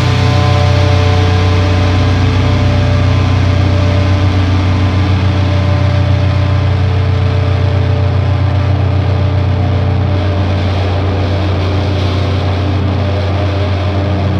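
A sustained, loud low drone from a blackened hardcore recording, with no drums or rhythm; a few higher held tones above it slowly fade away over the first half.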